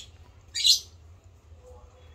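A small caged bird gives one short, sharp chirp about halfway through, against a quiet room background.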